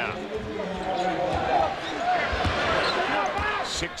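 Basketball arena crowd noise with a basketball bouncing on the hardwood court.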